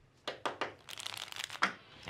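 A deck of playing cards being shuffled: a few separate snaps, then a quick run of rapid flicks, ending with one sharp snap near the end.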